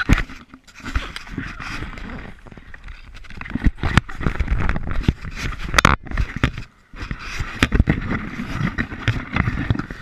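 Handling noise from a small camera being gripped and moved about: rubbing and scraping right on its microphone, with many sharp knocks.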